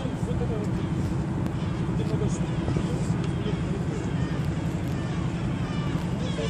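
City ambience heard from high above: a steady low hum of distant traffic, with indistinct voices of people close by.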